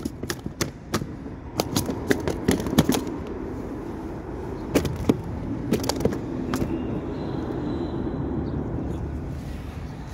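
Knocks and rattles of handling in a small boat while a crappie is landed, thick over the first three seconds and sparse after, over a steady low rumble.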